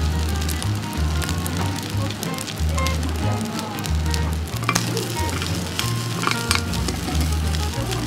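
Rice sizzling in a hot cast-iron grill pan, with a metal spoon clicking and scraping against the pan now and then. Background music with a steady bass line plays under it.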